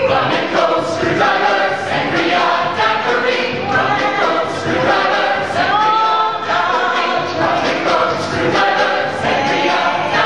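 A mixed chorus of men's and women's voices singing a show tune together, the notes held and flowing on without a break.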